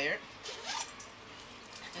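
Zipper on a handbag being pulled open: a short rasp about half a second in.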